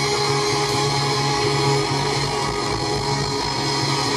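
Live rock band through a PA, holding a loud sustained chord under a dense, noisy wash of guitars and cymbals.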